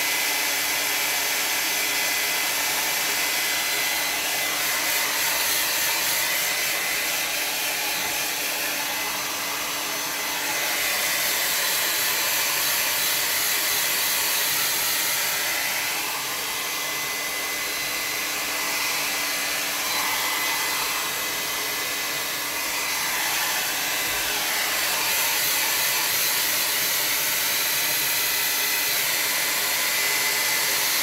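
Hand-held hair dryer blowing steadily over a wet watercolour painting to dry it, a rush of air with a faint steady whine. It dips slightly in loudness now and then as it is moved about.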